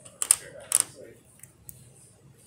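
Two short, sharp crackles about half a second apart, then a few faint clicks: handling noise close to the microphone.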